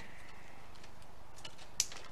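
Faint handling of green mesh ribbon, with a few soft ticks and one sharp click near the end.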